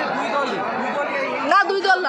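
Speech only: background talk and chatter from the people standing around, with a nearer voice starting to speak near the end.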